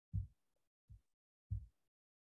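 Three short, soft low thumps, about two-thirds of a second apart.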